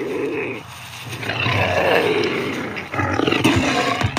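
An animal-like roar sound effect: three long, drawn-out roars with short breaks between them.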